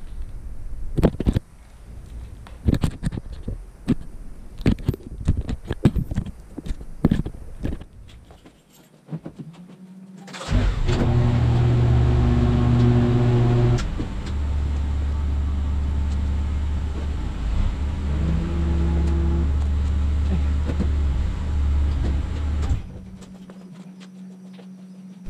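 Footsteps and small knocks for several seconds. About ten seconds in, a Honda Accord's engine starts and runs at a raised idle that settles after a few seconds. It keeps running steadily while the car is pulled forward a short way, and is switched off near the end.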